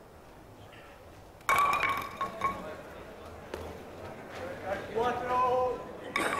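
Wooden bowling ball knocking into wooden skittles about a second and a half in, a sharp ringing clatter, followed by a few lighter knocks as the pins settle. A voice calls out near the end.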